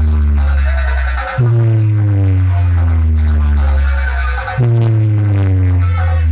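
Hard-bass DJ track blasting from a large competition speaker stack (8 bass, 6 mid), played as a high-bass speaker check. Long, deep bass notes slide down in pitch, and a new one hits about every three seconds.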